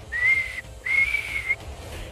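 A person whistling two notes, the second a little higher and longer than the first.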